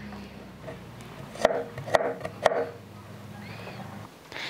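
Kitchen knife slicing a garlic clove on a wooden cutting board: three sharp knocks of the blade on the board, about half a second apart, over a low steady hum.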